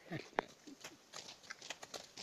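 Irregular soft clicks and rustles of people walking and working through an opium poppy field, several a second.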